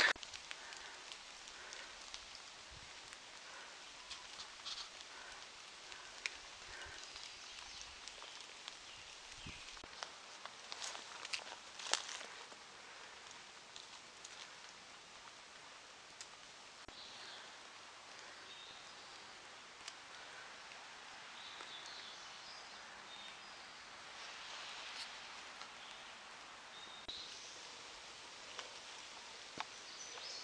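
Faint sounds of someone walking a dirt forest trail: footsteps and rustling of leaves and brush, with a few sharper taps a little before halfway and scattered faint high chirps.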